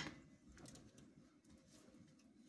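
Near silence, with a few faint light clicks of tongs working in a skillet.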